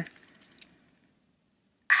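Near silence: faint handling noise fading out in the first moments, then about a second of dead silence.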